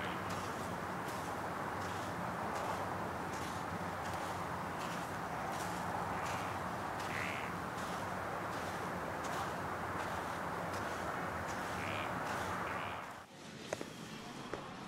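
A few crow caws over a steady outdoor background hiss. The hiss drops away suddenly shortly before the end, leaving a quieter indoor hush.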